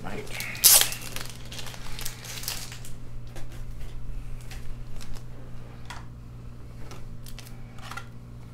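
A short, loud rustling tear of packaging less than a second in, then scattered light clicks and rustles of handling, over a low steady hum.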